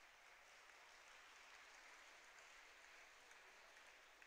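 Near silence: a faint, even hiss of room tone.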